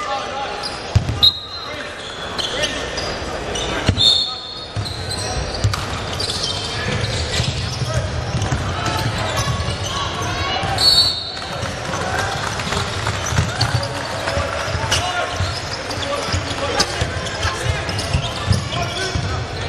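Live basketball play in a large hall: the ball bouncing on the hardwood floor, and players and spectators calling out. Sneakers squeak sharply a few times, about a second in, at four seconds and near eleven seconds.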